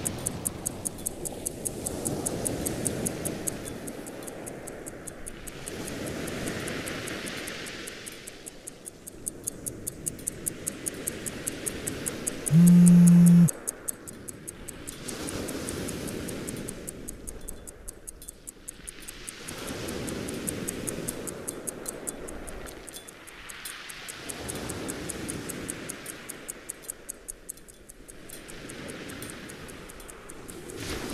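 Pocket watch ticking steadily, about three ticks a second, over a slow rising and falling wash of sound. One brief, loud, low buzz comes about halfway through.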